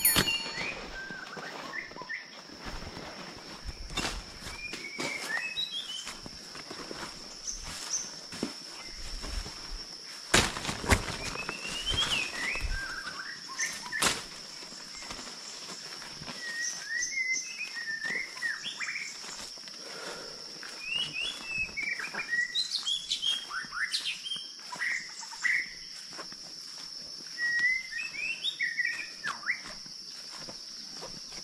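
Several wild birds chirping and trilling in a forest, short varied calls coming and going throughout, over a steady high-pitched drone. A few short knocks sound in the first half.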